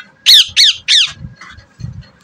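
Pet ring-necked parakeet giving three sharp squawks in quick succession, each sweeping down in pitch.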